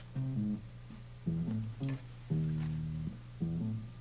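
Background music: a low bass line played in short plucked phrases of two or three notes, with gaps between them and one longer held note in the middle.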